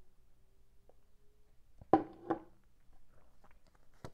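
Tarot cards being handled: two sharp snaps of the cards about two seconds in, then light clicks and rustles as a card is drawn from the deck.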